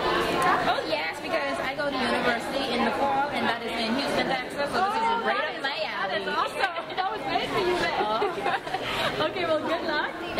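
Many voices talking at once in a large hall: steady, overlapping crowd chatter with no single clear speaker.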